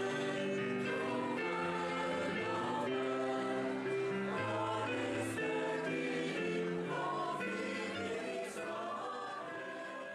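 A small choir singing in sustained harmony, accompanied on a digital stage piano, with long held notes changing chord every second or so.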